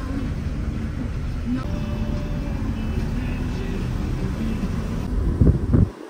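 Steady low rumble of road and engine noise inside a moving car's cabin, with a few heavy low thumps near the end.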